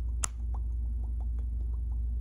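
Fingers with long acrylic nails working close to the microphone: one sharp click just after the start, then faint, irregular little ticks and taps over a steady low hum.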